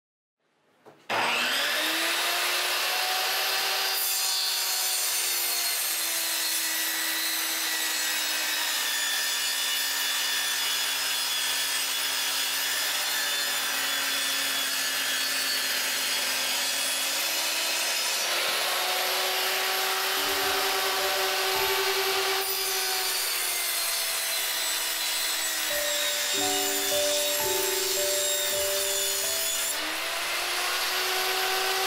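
Table saw motor switching on and spinning up with a quick rise in pitch, then running with a steady whine as it rips a sheet of plywood, the pitch sagging and recovering as the blade takes the load.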